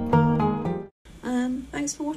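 Acoustic guitar background music that cuts off suddenly about halfway through, followed by a woman speaking.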